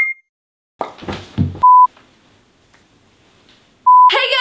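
Edited intro sound effects: a quick rising two-note electronic blip, a short burst of noise about a second in, then a brief steady beep like a TV test-pattern tone. After a quieter stretch, the same beep sounds again at the end.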